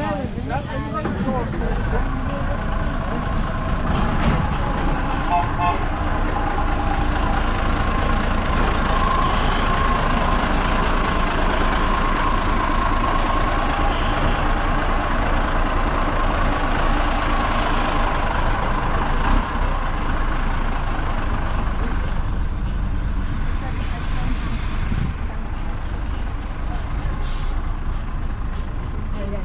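Heavy vintage truck engine running close by, a steady loud low rumble with a whine over it for much of the time.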